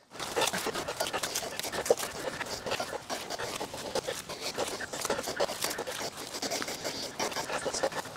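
Continuous close rustling and crackling of garden foliage and stems being handled and pulled, with many small snaps running through it and a sharper snap about two seconds in.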